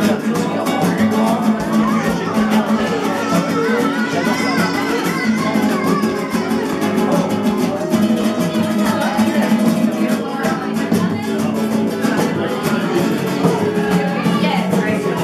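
Several acoustic guitars strumming a gypsy rumba rhythm together, with singing and party voices over the playing.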